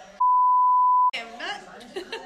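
A censor bleep: one steady, high, pure beep tone lasting about a second, with all other sound cut out beneath it, covering a word.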